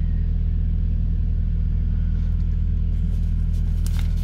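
Steady low rumble of a car heard from inside its cabin. Near the end there is a light rustle of a paper catalogue page being handled.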